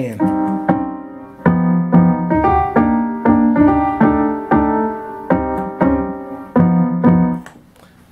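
A recorded keyboard track playing back from the DAW through studio monitors: piano-like chords struck one after another, each fading away, stopping shortly before the end.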